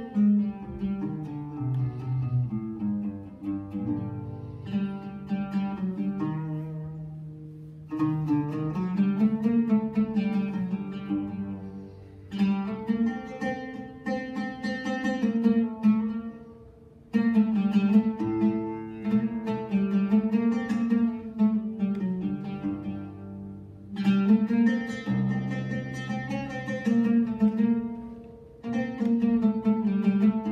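Solo oud plucked in slow melodic phrases, in an old, sad Arabic maqam. The phrases break off with short pauses, at about 8, 12, 17, 24 and 28 seconds.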